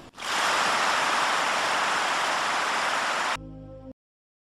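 Audience applauding, a steady even clatter of clapping that starts just after the speech ends and cuts off abruptly after about three seconds. A short held musical chord follows.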